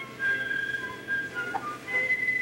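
Live opera performance on a poor-quality 1960 recording. A thin, high melody of held notes steps from pitch to pitch.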